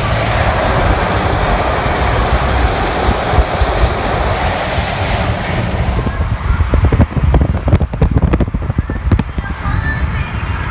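Road and wind noise inside a car travelling at highway speed: a steady low rumble with a noisy hiss. From about seven seconds in, a run of sharp knocks or buffets breaks through.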